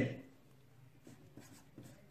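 Pen writing on paper: faint, short scratchy strokes as letters are drawn.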